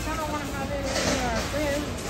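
People talking, not close to the microphone, over the steady low background hum of a large store.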